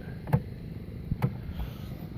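Two short knocks about a second apart over low steady background noise, typical of handling noise.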